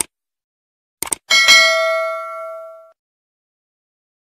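Subscribe-button animation sound effect: a click, then two quick clicks about a second in, followed by a bell-like notification ding that rings out and fades over about a second and a half.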